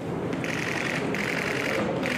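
Bursts of rapid mechanical clicking, each about half a second long. Two bursts are complete, and a third begins at the very end, over a steady background hum of the room.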